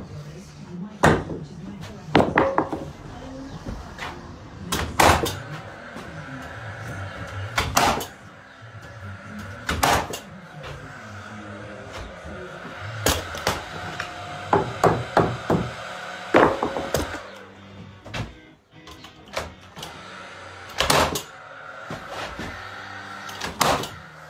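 Nails being driven into timber stud framing: irregular sharp knocks, about a dozen, with a quick run of several strikes around the middle. Faint music plays underneath.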